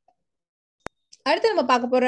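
Quiet pause broken by a single short, sharp click a little under a second in, then a voice starts speaking.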